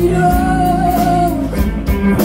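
A live band playing loudly, with electric guitars and a voice singing one long wavering note through the first second or so.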